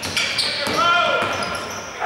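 Basketball dribbled on a hardwood court in a large indoor arena, with short high squeaks from players' shoes.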